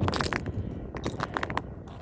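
Footsteps in shoe spikes on a frozen river: a run of irregular sharp clicks and scrapes as the metal spikes bite into the ice, getting gradually quieter.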